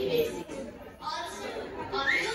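A woman speaking into a microphone over a hall's sound system, with audience chatter and the hall's reverberation behind.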